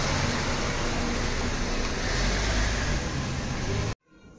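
Steady loud rumble with hiss, like a motor running close by, cutting off abruptly just before the end.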